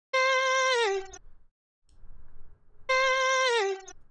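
A single sung note isolated from a song's vocal layer, played back twice from audio-separation software. Each time it is a clear held tone that slides down in pitch just before it stops.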